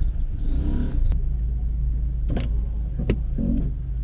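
Box truck's engine running slowly close by, a steady low rumble, with a few sharp clicks over it.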